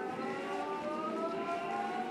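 Wordless voices held in a siren-like wail that climbs slowly and steadily in pitch.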